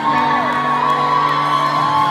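Live rock band holding a steady sustained chord through the PA, one high held note over low ones, while fans in the crowd whoop.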